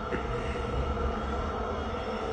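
Steady low rumble with a constant hum, even throughout, with no voices or sharp sounds.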